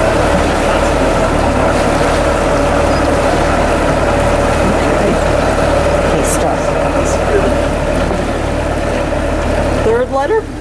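Water rushing steadily through the open sluices of a canal lock's upstream gates as the lock fills, with the boat's engine running underneath.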